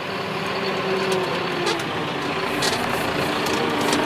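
John Deere 6330 tractor engine running steadily, heard from inside the cab.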